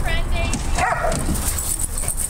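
Dogs vocalising as they play: a short, high, wavering whine right at the start, then a brief sharp yip about a second in.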